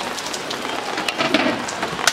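Clay pot of broth simmering on a gas burner: a steady crackling hiss with many small pops.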